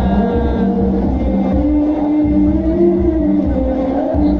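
Sholawat devotional chanting with a steady low drum beat. A sung note is held through the middle, rising a little and then falling, over the regular beat.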